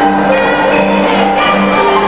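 A children's ensemble of mallet-struck barred instruments, xylophones and metallophones, playing together: a bass line of held low notes under higher ringing notes that change every fraction of a second.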